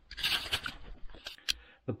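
Handling noise from a plastic Scalextric stock-car slot car turned over in the hand: a short rustle, then a few light plastic clicks.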